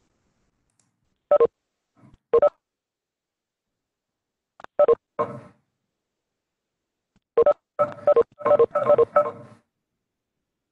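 Short electronic beep tones from the online meeting software, all on the same few fixed pitches. Two single beeps come a second apart early on, a pair follows near the middle, and a rapid run of beeps comes near the end, the kind of chimes that sound as participants join the call.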